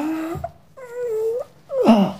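A man's wordless cries of pain: two drawn-out moans, then a sharper cry near the end that falls in pitch.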